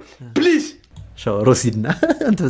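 A man's voice: a throat clearing near the start, then a few spoken words.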